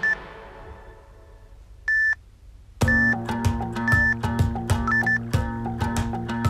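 Workout interval-timer beeps over backing music. The music fades out and a short, high electronic beep sounds at the start, then a longer one about two seconds in. Just under three seconds in, music with a steady beat starts again, with further short beeps about once a second.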